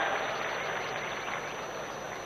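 A pause in an amplified speech: an even, fairly quiet hiss of background noise from the venue, fading gradually after the last words.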